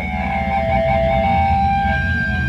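A live hardcore punk band playing: long, steady electric guitar tones ring out over a dense, pulsing bass and drum low end.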